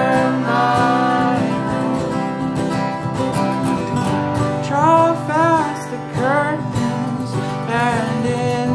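Acoustic string band playing a country-folk song: two acoustic guitars strumming chords, with a melodic line above them that bends and wavers, busiest in the second half.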